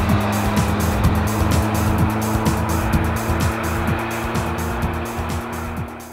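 A car passing on a paved road, its tyre roar loud at first and fading away near the end, over background music with a steady beat. The car is a Suzuki Jimny on Geolandar M/T+ mud-terrain tyres.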